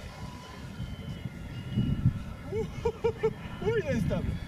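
Radio-controlled seaplane flying overhead, its motor a faint thin whine under low wind rumble on the microphone. Past the middle comes a quick run of short voiced sounds from a person.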